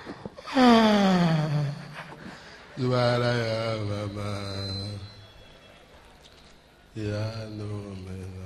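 A man's voice through a microphone making drawn-out wordless sounds: a long falling groan about half a second in, then two long low held tones.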